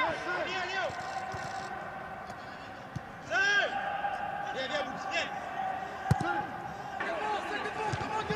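A football being kicked on the pitch of an empty stadium: a few sharp thuds about three seconds apart, with brief voices between them over a faint steady hum.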